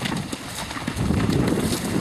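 Hooves of an Irish Draught cross Thoroughbred horse cantering through shallow water, splashing, then hoofbeats on firmer ground, louder from about a second in.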